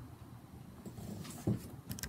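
Two soft thumps, about one and a half seconds in and again just before the end, over faint background.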